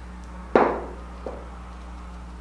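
A sharp knock of something hard bumped or set down on a surface, followed about three-quarters of a second later by a much fainter tap.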